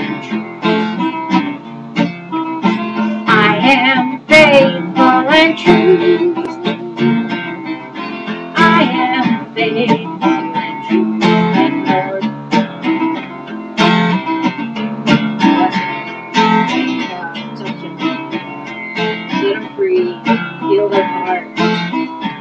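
Acoustic guitar strummed and picked in a steady rhythm, an instrumental passage of a slow song with no singing over it.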